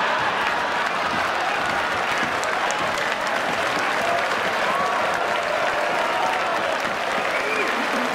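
Audience applauding and laughing steadily after a joke, with scattered voices in the crowd.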